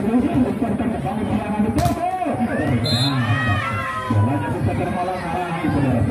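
Spectators at a volleyball match chattering and shouting, with a single sharp smack about two seconds in, followed by high-pitched rising and falling cries from the crowd.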